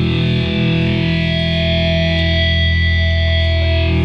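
Hardcore band playing live: heavily distorted electric guitar and bass holding a long ringing chord, loud and steady, with no clear drum hits.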